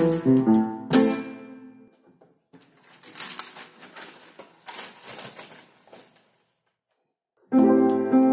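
Upright piano with a moth-eaten action, only roughly tuned: a few notes and a chord about a second in that rings out, then several seconds of noisy handling sounds with no notes. After a brief silence, loud chords start again near the end.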